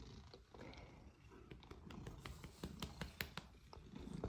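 A domestic cat purring faintly, with a scatter of light clicks in the second half.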